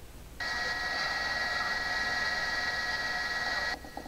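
A steady electronic tone with a hiss behind it, switching on abruptly about half a second in and cutting off just as suddenly shortly before the end.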